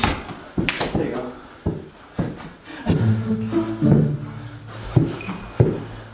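Mini basketball thudding off the door-mounted hoop and the floor during play: a run of sharp knocks in the first couple of seconds and two more near the end. Low voices sound in between.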